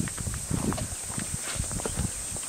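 Footsteps of hikers scrambling over boulders and loose stones: irregular knocks and scuffs of shoes on rock.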